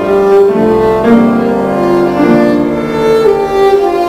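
Viola and C. Bechstein grand piano playing contemporary classical chamber music: the viola bows sustained notes that shift pitch every second or so over a piano accompaniment.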